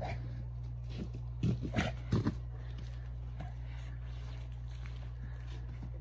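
A Cane Corso giving a quick run of short, deep, growly barks in play, about one and a half to two and a half seconds in, over a steady low rumble.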